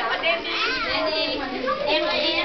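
A crowd of young children chattering, many voices overlapping without a break.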